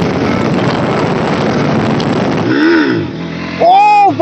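Motorcycle running at speed, its engine mixed with wind rushing over the onboard camera. About two and a half seconds in the sound changes to a pitched note that rises and falls, and near the end a louder pitched sound swells and dips a few times.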